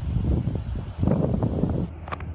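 Wind buffeting the microphone in uneven low gusts, strongest at the start and again from about a second in.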